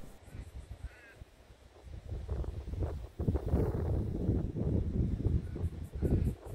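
Two short bird calls in the first second, then wind rumbling on the microphone in irregular gusts from about two seconds in, which is the loudest sound.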